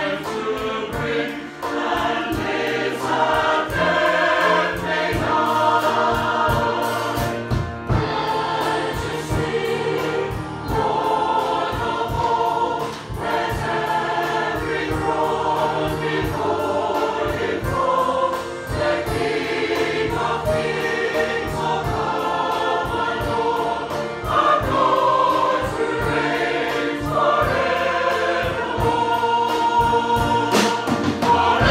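Mixed choir singing a worship song in several parts, over an accompaniment that keeps a steady beat.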